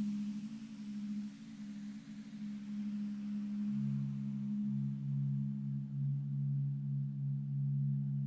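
Background meditation music: a sustained drone of steady low tones, with a lower tone coming in a little under four seconds in.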